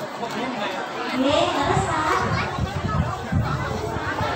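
A woman talking into a microphone over a public-address system, with crowd chatter around her.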